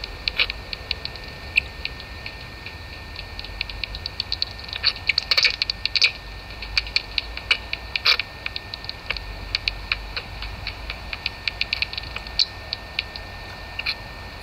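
Bat detector rendering the echolocation calls of noctule bats (Nyctalus noctula) as irregular trains of clicks, with denser, louder runs about five to six seconds in and again at about eight seconds, over a low steady hum.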